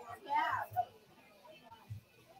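A brief, faint voice in the first second, then near quiet.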